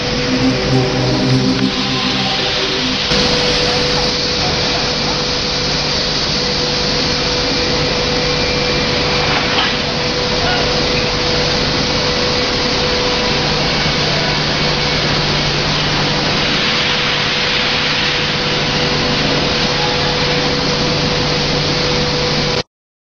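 Dust-suppression fog cannon running, its fan blowing atomised water mist with a steady rushing noise and a constant hum. A few pitched tones sound over it in the first three seconds.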